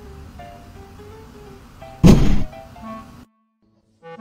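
A single loud, hollow thunk about two seconds in, as a cat perched on a laundry hamper's lid drops into the hamper, over quiet background music. The sound cuts out shortly before the end.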